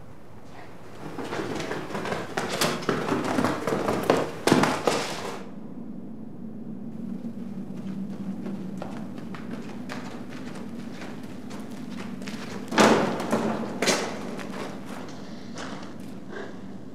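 A few seconds of dense clattering knocks and thumps, then a steady low hum, broken near the end by two heavy thumps about a second apart.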